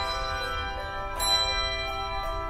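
Handbell choir ringing sustained chords, with a new chord struck a little over a second in.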